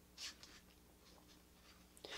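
Near silence: room tone with a faint low hum, and one soft, brief rustle about a quarter second in.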